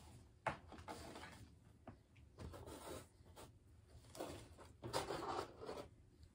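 Faint rustling and crinkling of packaging being handled, in several short bursts, the loudest near the end.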